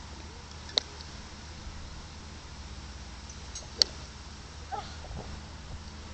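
Two short, sharp clicks of a golf club head striking a golf ball, about a second in and just before four seconds, the second one louder. They sound over a steady low outdoor background rumble.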